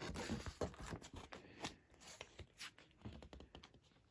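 Faint paper rustling and scattered light clicks from a picture book's pages being handled and turned.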